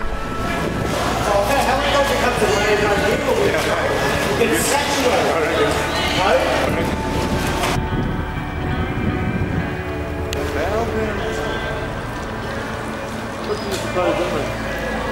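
Indistinct voices talking over background music with held, sustained tones; the voices thin out about halfway through.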